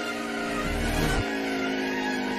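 Stock-car engine sound effect from an animated race, played backwards: a steady engine tone that slowly falls in pitch, with a low rumble about a second in.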